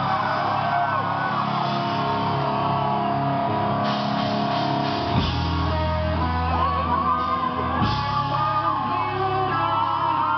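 Heavy metal band playing live: distorted electric guitars hold long notes over bass and drums, with heavy hits about four, five and eight seconds in, and notes that glide in pitch in the second half.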